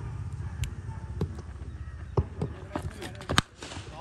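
Scattered light knocks over a low background noise, then one sharp crack about three and a half seconds in: a cricket bat striking the ball.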